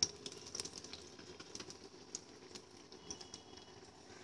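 Battered egg chops deep-frying in hot oil: a faint, irregular crackle of small pops from the frying.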